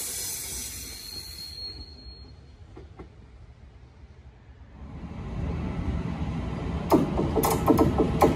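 A DSB double-deck commuter train running away into the distance, its rumble dying down over the first few seconds. From about five seconds in, the low rumble of an approaching EB-class electric locomotive and its train builds up, with a series of sharp knocks and clanks in the last second.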